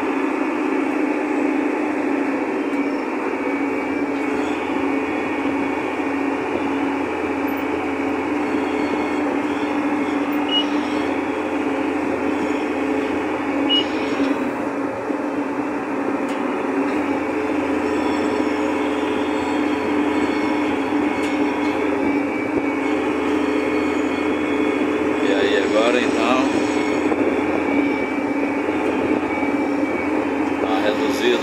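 Tractor engine running at a steady pace, heard from inside the cab while driving: a constant hum with no change in speed.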